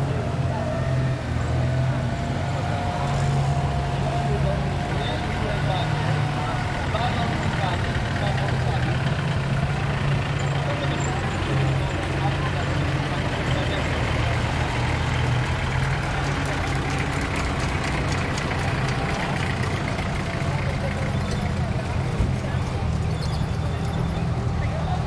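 Engines of military off-road vehicles, a UAZ van and a UAZ jeep, running steadily as they drive slowly past on a dirt track, with people talking indistinctly.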